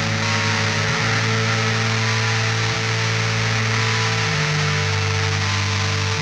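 Black metal played by a band of distorted electric guitar, bass and drums in a dense, unbroken wall of sound, from a lo-fi four-track recording. The low notes change about two-thirds of the way in.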